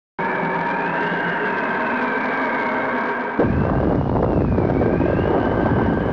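Intro sound effect: a steady synthesized drone with a slowly wavering high tone, joined about three and a half seconds in by a sudden deep rumble.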